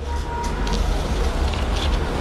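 A steady low rumble with an even noise over it, and a few light rustles of paper sheets being handled.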